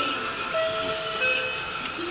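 Railway station concourse ambience at the ticket gates: a steady hiss of hall and crowd noise, with a few short steady tones sounding about half a second in.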